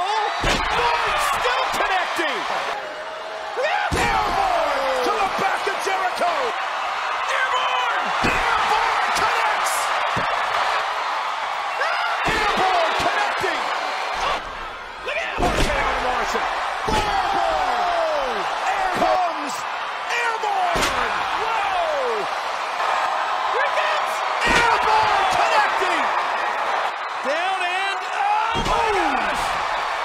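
Wrestlers' bodies slamming onto a wrestling ring mat, about eight heavy thuds spread a few seconds apart, over continuous voices and crowd noise from the arena.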